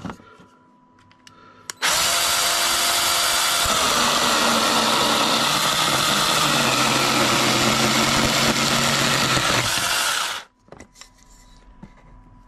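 ValueMax 4-inch 20V cordless mini chainsaw starting up about two seconds in. Its electric motor and chain run at a steady high pitch, then drop lower as the chain bites into a thick timber beam. It saws steadily without stalling for about six seconds, then stops suddenly.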